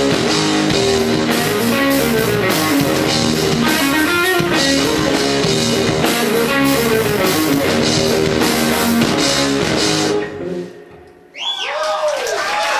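Rock band playing live, led by a Gibson Flying V electric guitar over a drum kit. The music stops about ten seconds in and the sound drops away, with a few short high sliding tones near the end.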